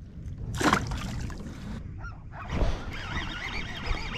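A short splash about half a second in as a released calico bass drops back into the water, then water and handling noise on the plastic kayak with a second brief rush about two and a half seconds in. Near the end a wavering high whine begins as the baitcasting reel is cranked.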